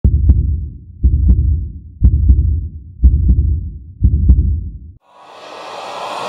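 Trailer-style heartbeat sound effect: five deep double thumps, one a second. In the last second a swell of noise starts and grows louder.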